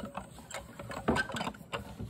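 A run of light clicks and taps, with a short cluster about a second in, from plastic kitchen items being jostled on a counter.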